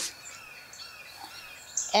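Faint bird chirps and twittering in the background, short high calls over a quiet outdoor hush.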